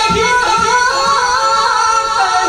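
A single high voice singing a naat, a devotional Urdu song in praise of the Prophet Muhammad, holding and sliding between notes in an ornamented melody. A few soft low thumps sound under the first second.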